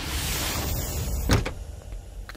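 A Mahindra Scorpio SUV running as it comes to a stop, then its door unlatching and swinging open with one sharp click about a second and a half in.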